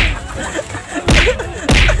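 Boxing-glove punches landing on a body, three sharp hits: one at the start, one a little past a second in, and one near the end.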